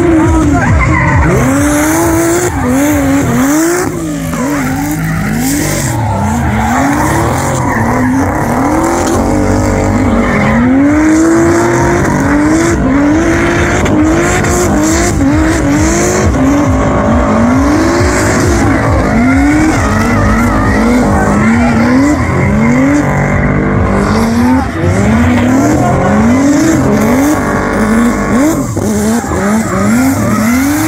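A car engine revved hard again and again, its pitch climbing and dropping about once a second, while the tyres squeal and skid as the car drifts and spins its wheels in a burnout.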